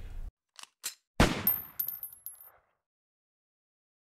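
Short logo sound effect: two faint clicks, then one sharp hit with a brief ringing tail, high thin tones and a few light ticks, all over about two and a half seconds in.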